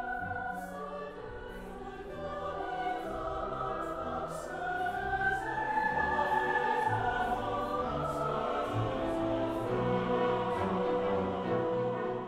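A choir singing with a full symphony orchestra: sustained choral lines over strings, swelling louder about halfway through.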